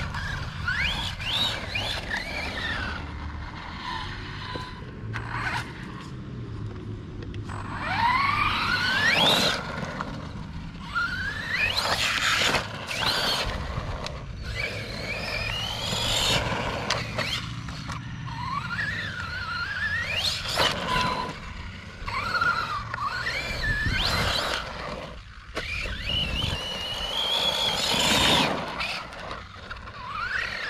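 Losi Baja Rey electric RC trophy truck, on a 3S LiPo, driving hard on dirt. Its motor and drivetrain give a whine that rises in pitch with each burst of throttle, several times over, mixed with tyres scrabbling and crunching on the loose dirt.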